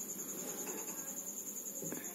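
A cricket chirping in the background: a steady, high-pitched trill of evenly repeated pulses.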